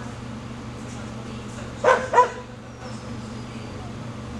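A small dog barks twice in quick succession about two seconds in, over a steady low hum.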